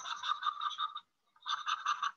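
Stylus scratching on a drawing tablet's surface in quick back-and-forth shading strokes, in two bursts with a short pause between them, the second starting about a second and a half in.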